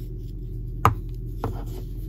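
Two sharp taps a little over half a second apart, the first the louder, from hands working a crochet hook through cotton yarn close to the microphone, over a steady low hum.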